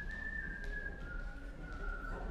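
An audience member whistling one long, high note of approval that drops slightly lower about a second in, over a few scattered claps as the applause dies down.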